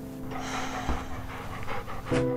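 A golden retriever panting, over soft piano music.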